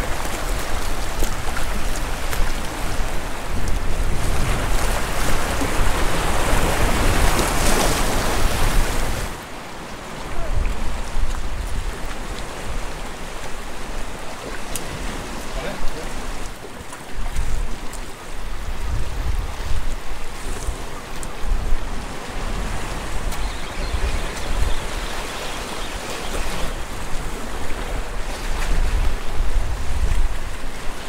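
Sea surf washing over the rocks, with wind buffeting the microphone. The surf hiss is loud for about the first nine seconds, then drops suddenly to a lower level broken by low rumbling wind gusts.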